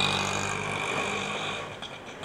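Street traffic noise with a vehicle engine's low, steady hum, fading gradually.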